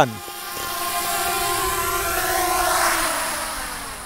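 A DJI Mini quadcopter's propellers and motors whirring at idle as it sits on the pavement. The hum is steady and holds several tones at once. It grows louder toward the middle, then fades, dropping slightly in pitch near the end.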